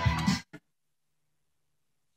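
Guitar music playing from a vinyl record on a Dual 1257 turntable stops abruptly about half a second in, as the reject function lifts the stylus off the record. A brief click follows, then near silence.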